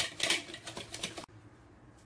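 Wire balloon whisk beating eggs and sugar in a bowl, with rapid clicking and scraping strokes against the bowl's side. It cuts off suddenly a little over a second in.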